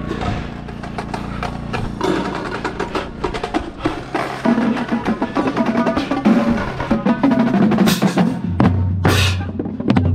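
Indoor percussion ensemble drumline playing: dense, rapid snare and tenor drum strokes over bass drums, with two bright cymbal crashes about eight and nine seconds in.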